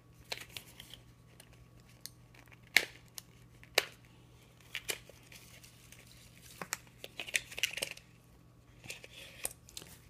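A pen and its case being handled over a box of shredded paper filler: a few sharp clicks spaced about a second apart, then short bursts of paper crinkling near the end.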